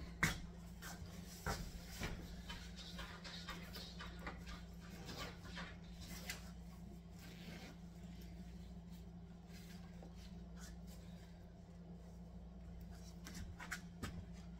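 Scattered rustles and light knocks of objects being handled and moved about, over a steady low hum.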